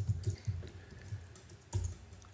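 Computer keyboard keys being pressed: a few light keystrokes, then one louder, heavier key strike near the end.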